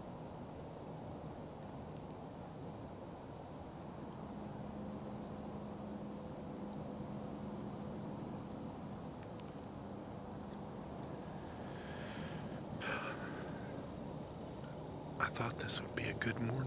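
Quiet woodland ambience: a faint steady hiss with a weak low hum, a brief rustle about three-quarters of the way through, and a few sharp clicks near the end.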